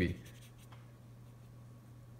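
Faint strokes of a paintbrush on paper, over a low steady hum.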